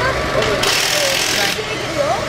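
A pneumatic tool in a rally service area sounds in a harsh, hissing burst of about a second, starting just over half a second in, with voices talking underneath.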